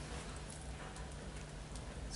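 Quiet lecture-room tone: a steady low hum and faint hiss, with a few light scattered ticks.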